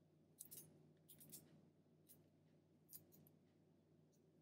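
Near silence, with a few faint, brief crackles of aluminium foil as fingers press Skittles down onto it: one about half a second in, a short cluster just after a second, and one near three seconds.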